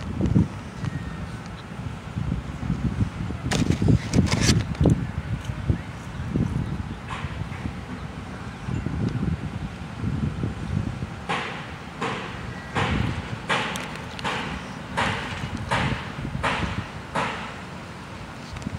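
Wind buffeting the microphone outdoors, a fluctuating low rumble, with a few sharp clicks early and a run of about a dozen evenly spaced sharp knocks, roughly two a second, in the second half.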